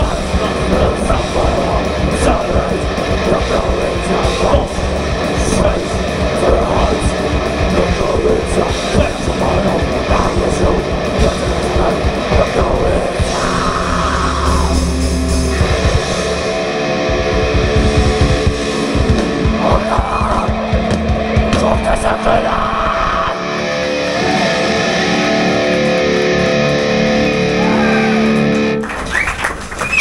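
Thrash metal band playing live: distorted electric guitars, bass guitar and fast drums. About three quarters of the way through the drums drop out and held, ringing guitar chords carry on until the song ends shortly before the end.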